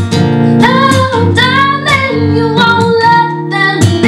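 A woman singing long held notes over a strummed acoustic guitar.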